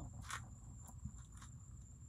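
Faint, steady, high-pitched trilling of night insects, with a few faint soft knocks.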